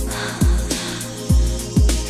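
Classic 80s–90s disco and dance music from a DJ mix: a heavy kick drum about twice a second over held bass and keyboard notes, with hi-hats.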